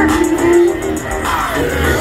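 Live hip-hop music played loud over a concert sound system, with a steady beat and vocals over it.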